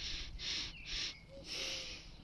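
A man sniffing daffodil flowers close to his nose, drawing in four quick sniffs in a row.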